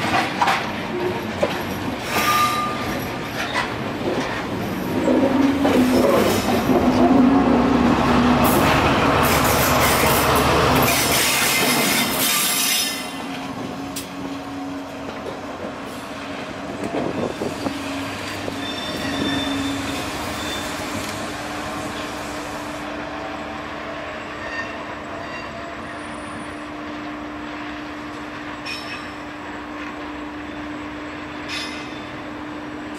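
Network Rail test train coaches running close past on curved track, with wheel clicks over the rail joints and brief wheel squeal. About 13 seconds in the loud rolling noise drops away, leaving the steady drone of the Colas Rail Class 70 diesel locomotive on the rear as it pulls away.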